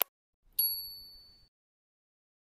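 Subscribe-button animation sound effect: the end of a mouse-style click, then a single bright bell-like ding about half a second in that fades away over about a second.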